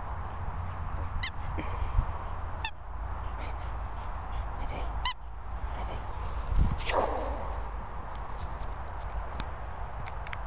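A dog squeezing a rubber squeaky toy in its mouth: three short, high squeaks, the loudest about five seconds in, over a steady low rumble.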